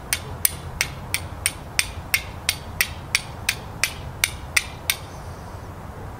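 Steel fire striker struck against a piece of flint, a quick steady series of about fifteen sharp, bright clicks, roughly three a second, throwing sparks. The striking stops about five seconds in.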